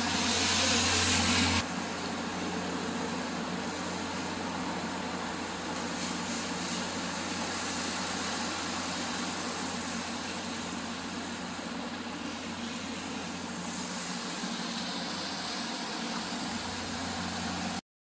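Steady drone of a Megabus coach, engine and ventilation running together, heard from inside the cabin. A louder hiss and a deep low hum fill the first second and a half, then the sound settles to an even running noise.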